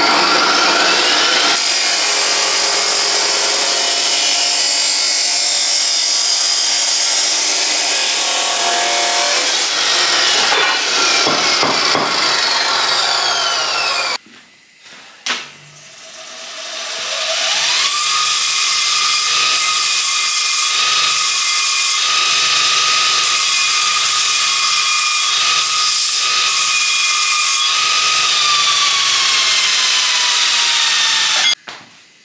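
Abrasive chop saw cutting through steel tube, its disc winding down with a falling whine when the cut is done about halfway through. Then a bench grinder spins up with a rising whine, runs steady as the cut tube end is deburred, and winds down near the end.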